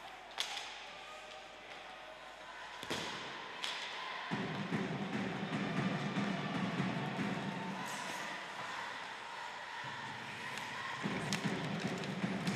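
Ice hockey play in an arena: a handful of sharp knocks from sticks, puck and boards over a steady arena noise that gets louder about four seconds in.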